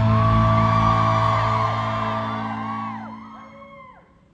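A live rock band's last chord, on electric and acoustic guitars, ringing out and fading away, while audience members whoop and scream over it with high calls that rise and fall.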